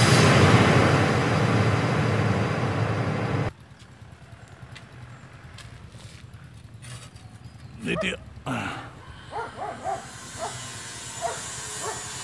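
A loud whooshing intro sound effect with a fluttering low rumble cuts off suddenly about three and a half seconds in. Quiet outdoor background follows, with a few short barks from a dog near the middle.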